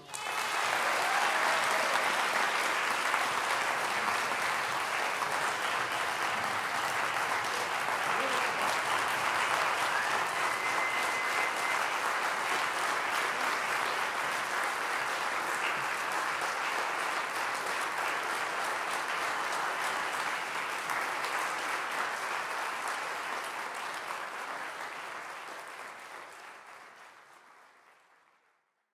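Audience applauding steadily, fading out over the last few seconds.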